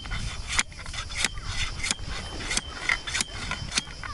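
Beach umbrella sand anchor being driven into a gravelly beach with its built-in hammer: six sharp knocks about two-thirds of a second apart, with stones grating around the shaft. A rock under the surface is keeping it from going all the way down.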